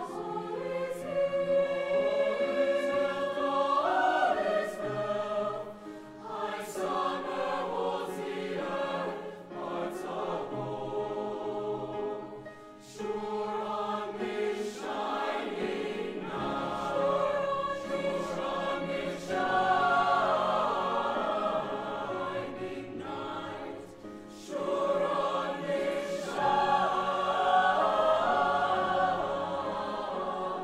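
High school choir singing in parts, in long held phrases with brief pauses between them.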